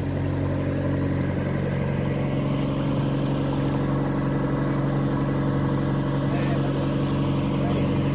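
A fishing boat's engine running at a steady cruising speed, an even drone with a low hum, with the hiss of water along the hull.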